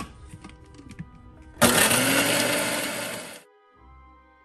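Countertop blender running in one burst of about two seconds, chopping whole Oreo cookies, its motor pitch rising as it spins up before it cuts off. A few light clicks come before it.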